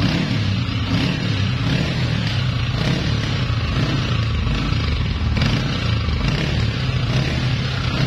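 Honda CG 125 Deluxe's single-cylinder four-stroke engine running steadily on the motorcycle for a sound test. The engine is in very poor, rusted condition, inside as well as out, and is heard before it is taken apart.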